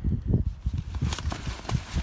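Footsteps and rustling in dry brush and leaf litter: a run of soft low thumps, with a brighter rustle in the second half.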